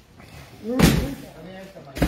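A single loud thud a little under a second in, with a short, sharp knock near the end, amid men's voices.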